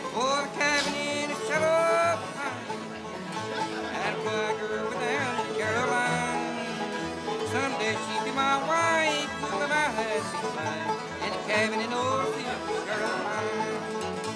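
Live bluegrass-style string band playing: strummed acoustic guitars and a steady upright bass pulse under a man singing the melody.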